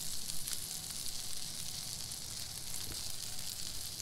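Steady sizzling hiss of a frying pan still on a portable burner.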